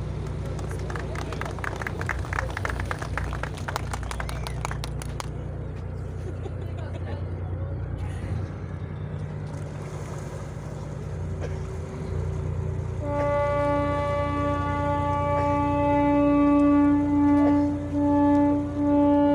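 A steel harbour tug's diesel engine running with a low steady drone as the boat gets under way. About thirteen seconds in, the tug's horn starts sounding: one loud, steady, fairly high-pitched blast that breaks briefly a couple of times near the end.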